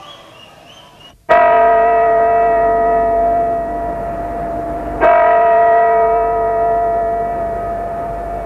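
A large bell struck twice, about four seconds apart, each stroke loud and ringing on with a slow fade. The first stroke comes in abruptly after a short dead gap, as if spliced onto the recording; faint crowd noise comes before it.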